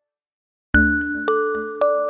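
Background music: a brief silence, then a bell-like, glockenspiel-style melody starting about a third of the way in, with struck notes ringing on at roughly two per second.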